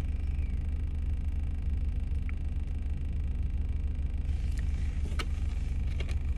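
Steady low rumble of a running car heard from inside the cabin, with a couple of faint clicks near the end.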